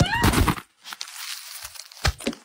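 A short squeak that rises in pitch, then about a second of soft rustling of styrofoam packing peanuts and packaging being handled close to the phone's microphone.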